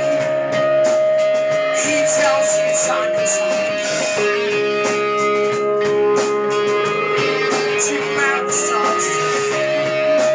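Live rock band playing an instrumental passage: electric guitars, keyboard and drum kit with regular cymbal strokes. A long held note steps down in pitch about four seconds in and back up near the end.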